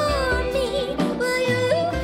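A woman singing a melody with a wavering vibrato while plucking a concert harp, low bass notes sounding in a steady pulse beneath the voice.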